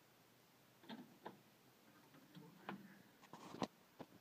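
Near silence broken by a few faint, short clicks and taps, the loudest near the end.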